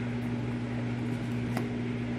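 A steady low electrical hum, as from a running fan or air-conditioning unit, with a faint click about one and a half seconds in.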